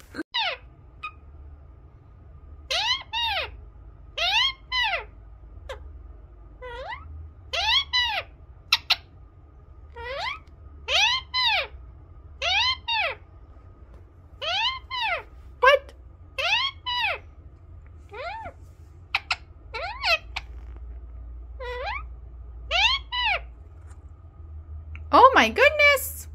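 Indian ringneck parakeet giving a long series of short calls, each rising then falling in pitch, about one every second or so.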